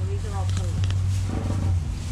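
A steady low hum that stops abruptly near the end, with a brief voice rising and falling in pitch early on and a few light clicks.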